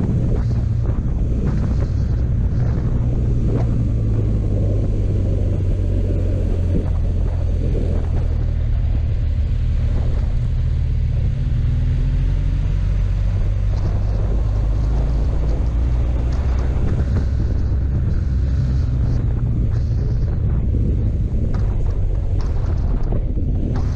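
Motorcycle engine running at riding speed, with wind rushing over the microphone. The engine note rises slightly about halfway through.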